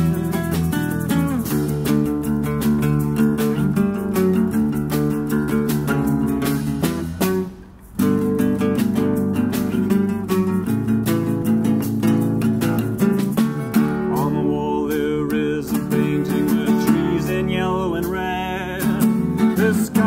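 Live acoustic band playing an instrumental passage on strummed and picked acoustic guitars and an electric guitar, over steady hand percussion with a shaker and cymbal. The music breaks off for under a second about seven seconds in, then picks up again.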